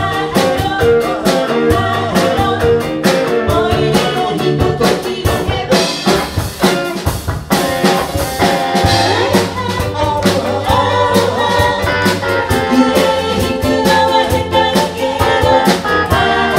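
A live band playing an upbeat rock tune: drum kit keeping a steady beat under bass, ukuleles and electric guitar, with voices singing.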